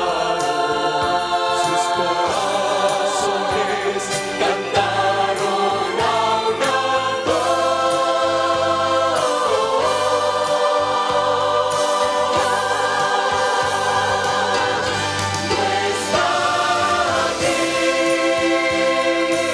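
A mixed choir of men's and women's voices singing into microphones, holding long chords that shift every few seconds.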